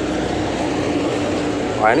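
Steady mechanical hum with a constant low tone, unchanging throughout; a voice exclaims 'wah' near the end.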